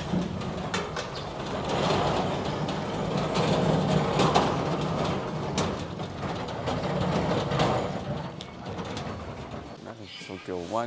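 A heavy stainless-steel oven cabinet rolled on a wheeled base over concrete: a continuous rattling rumble with scattered knocks and clicks, easing off near the end.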